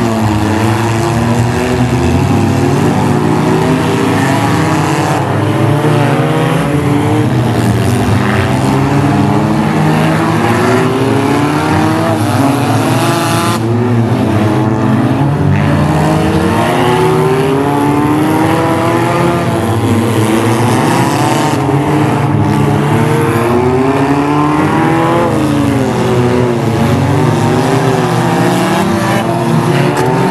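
Several front-wheel-drive stock cars racing, their engines revving at once, with many engine notes rising and falling over one another.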